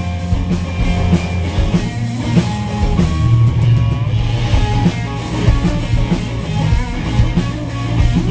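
Rock band playing live: electric guitar, electric bass guitar and drum kit together, loud and continuous.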